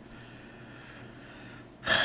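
Quiet room tone, then a man's quick, sharp intake of breath near the end.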